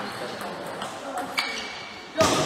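Table tennis ball clicking sharply, with one ringing ping about one and a half seconds in, over a murmur of background voices.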